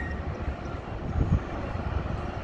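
Low, uneven outdoor rumble with no voices: a steady background of deep noise without any distinct tone or click.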